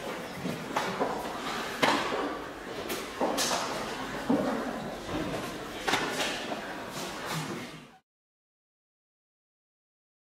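Several sharp smacks at irregular intervals, ringing in a large tiled hall, with shuffling and faint voices between them; the sound cuts off abruptly near the end.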